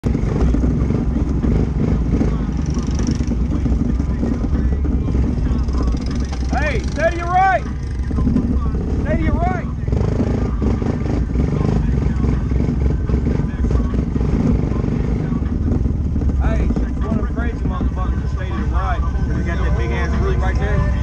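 ATV engine running steadily under way on a dirt trail. A voice comes in briefly several times over it, about a third of the way in, around halfway, and again near the end.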